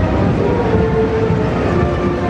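Steady low rumble of a column of military vehicles driving past, jeeps and tracked launchers, with faint held tones above it.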